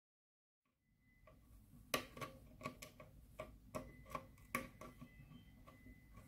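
Flat pliers clicking against a split pin as its legs are folded back on a propeller pitch-link axle: a run of light metallic clicks, about two to three a second, the first the loudest.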